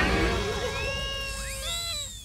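Cartoon sound effect of confetti shooting out of a wagon: a burst at the start, then whistling tones that glide up and down over a low rumble.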